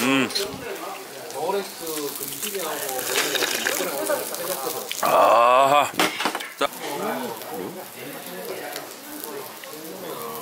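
Background voices in a busy restaurant, talking indistinctly throughout, with one louder voice about five seconds in.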